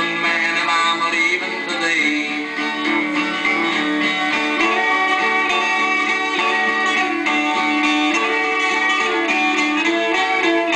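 Instrumental break of a 1950s rockabilly record played from a 45 rpm single: a plucked guitar lead over a strummed rhythm, with no vocals.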